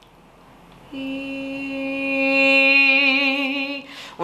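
A woman singing one held note on a vowel as a crescendo exercise. It starts about a second in, swells from soft to loud, and takes on vibrato near the end before stopping.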